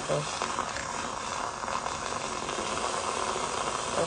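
Handheld battery-powered milk frother whisking coffee in a mug, running steadily with a frothy hiss as it churns the liquid.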